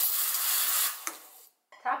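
Capresso EC Pro's stainless steel commercial-style steam wand purging into the drip tray after frothing: a loud, steady hiss of steam that stops about a second in and trails off.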